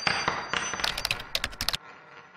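Sound effects for an animated logo intro: a metallic hit with a high ringing tone, then, about a second in, a quick run of sharp clicks that ends in a fading echo.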